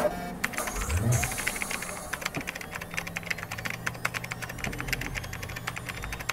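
Rapid clicking like typing on a computer keyboard, over a steady low hum; a low tone rises briefly about a second in.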